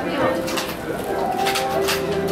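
Busy shop ambience: shoppers' voices mixed with low held tones and a few light clinks.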